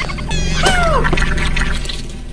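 A car tyre squashing and bursting a bag of water beads, heard as a steady low rumble. About two-thirds of a second in, a squeaky cartoon cry falls in pitch, over background music.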